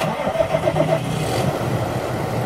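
John Deere tractor's diesel engine running steadily, starting suddenly out of silence.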